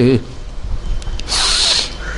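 A man's held sung note breaks off, followed by a short hiss about half a second long near the middle, over a low hum.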